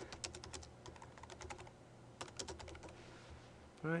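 Typing on a computer keyboard: a quick run of keystrokes in the first second, a pause, then another short run about two seconds in.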